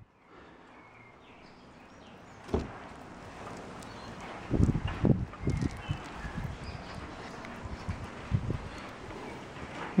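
Soft handling sounds of a wet lump of vermicast being pulled apart in the hand: a knock about a third of the way in, a run of low bumps and rustles around the middle, and another bump near the end, over a faint steady outdoor background.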